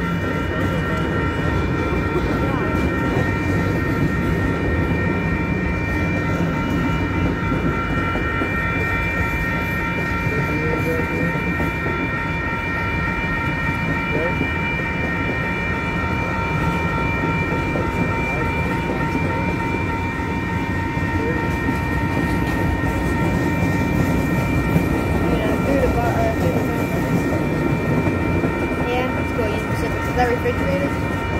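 Norfolk Southern freight train's cars rolling past close by, a steady rumble of wheels on rail, with several steady high-pitched tones running over it.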